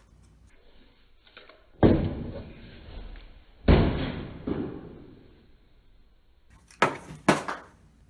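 Two heavy booming thumps about two seconds apart, each dying away over about a second, followed by two sharp knocks near the end.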